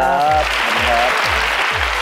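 Studio audience applauding over background music with a steady thumping beat, with a short spoken word at the start and another about a second in.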